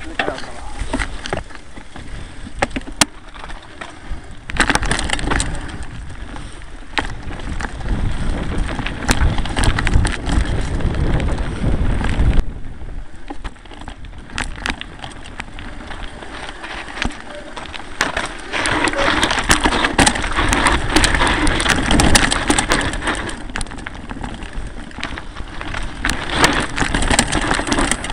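Mountain bike ridden over a rocky dirt trail, heard from the rider's camera: tyres crunching over stones, the bike and camera mount rattling with many sharp knocks, and wind rumbling on the microphone. It eases off briefly about halfway through, then picks up again.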